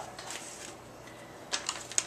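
Quiet handling of a foam meat tray and its plastic wrap, with a few light taps near the end as the tray is set down on the counter.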